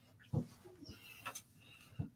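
A man laughing quietly to himself: one short chuckle about a third of a second in, then a few faint breathy traces.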